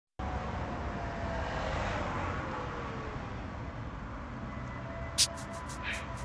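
A car driving, heard from inside the cabin: a steady low road and engine rumble, with a faint falling whine in the first few seconds. A run of sharp clicks starts about five seconds in, the first one loudest.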